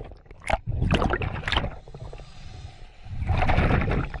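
Water sloshing and splashing around a camera at the water's surface, in two main surges: one about a second in and a louder one near the end.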